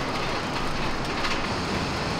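Original inclined elevator cage of an old blast furnace running steadily up its sloping rails, heard from inside the open mesh cage.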